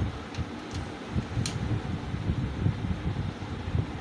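A few light metallic clicks in the first second and a half as tools work the tappet adjuster on the valve rocker of a 125 Deluxe motorcycle's single-cylinder engine, over a low, uneven rumble on the microphone.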